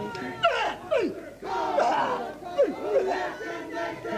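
Shouted cries from male Māori performers, each dropping steeply in pitch, several in quick succession about a second apart, with overlapping voices: the yells of a Māori wero (ceremonial challenge) to a visitor.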